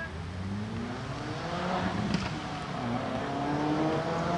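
A road vehicle's engine accelerating. Its note climbs steadily, drops briefly about three seconds in like a gear change, then climbs again. A single brief tap comes about two seconds in.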